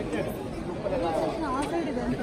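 Crowd chatter: many overlapping, indistinct voices talking at once, with one voice rising higher about one and a half seconds in.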